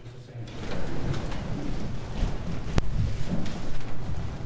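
A congregation standing up from the pews: a rush of shuffling feet, rustling clothes and creaking seats that starts about half a second in, with one sharp knock near the middle.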